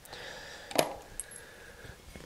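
Small metal wood screws clinking as they are picked out of a little cardboard box: one clear click a little under a second in, then a couple of faint ticks.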